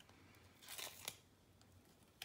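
Faint rustle of a small sticker label being peeled off its backing sheet by hand, briefly about a second in, with near silence around it.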